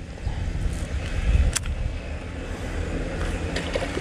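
Low, steady rumble of wind buffeting the microphone, with one sharp click about a second and a half in.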